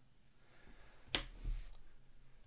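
Stiff chrome trading cards being shuffled in the hands: one sharp snap of card stock about halfway through, followed by a brief soft rustle.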